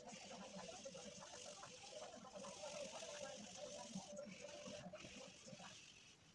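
Faint, steady scratching of a pencil on drawing paper as a sketch is laid down, with brief breaks between strokes.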